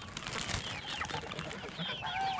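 Backyard poultry flock calling, a scatter of short high chirps and clucks, with wings flapping as birds scatter.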